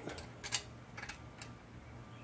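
A few faint metallic ticks and clicks of a wrench on a valve rocker-arm jam nut as it is tightened, the loudest about half a second in.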